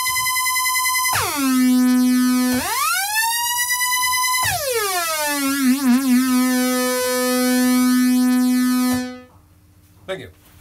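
Moog Rogue monophonic analog synthesizer playing single held notes with portamento: a high note glides slowly down two octaves, back up, and down again, with a brief vibrato wobble around six seconds in. The last note cuts off about a second before the end.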